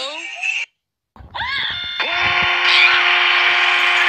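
Cartoon character voice clips: a voice trailing off at the start, a short gliding cry about a second in, then a loud scream held at a steady pitch from about two seconds in.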